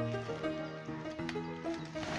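Background music, with held notes that change every fraction of a second.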